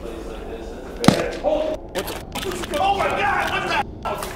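A single sharp bang about a second in, like a gunshot or firework going off in a large empty building, with a short echo after it. Men's voices then shout and call out as they run.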